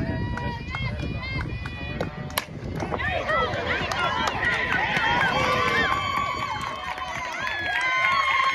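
A softball bat hitting the ball with a single sharp crack about two and a half seconds in. Straight afterwards, many voices yell and cheer from the dugout and stands.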